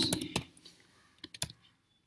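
Typing on a computer keyboard: a quick run of keystrokes in the first half second, then a few more keystrokes about a second and a half in.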